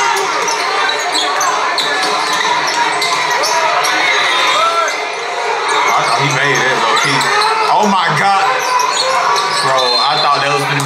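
Basketball bouncing on a hardwood gym floor during a game, over the talk and shouting of a crowd packed along the court.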